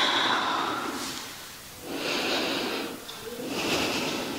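A woman breathing slowly in and out while holding a yoga pose. One breath fades over the first second and a half, another comes about two seconds in, and a third starts near the end.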